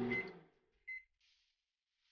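Microwave oven giving one short, high electronic beep about a second in.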